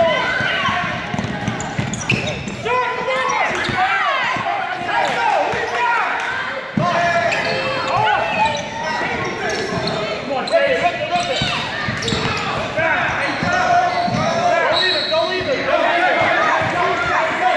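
A basketball dribbled and bouncing on a hardwood gym floor among overlapping shouts from players and spectators, all echoing in a large gymnasium.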